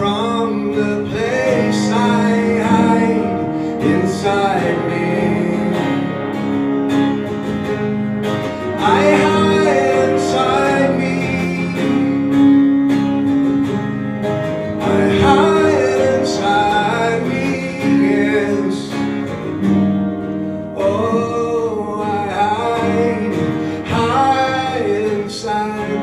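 Live band music: acoustic guitar and electric guitar playing together, with a man singing a melody over them.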